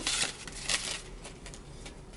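A small paper envelope being opened by hand: a few short paper rustles in the first second, then fainter handling.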